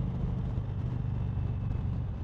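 Indian Chieftain Dark Horse V-twin engine running steadily at highway cruising speed, with wind and road noise over it.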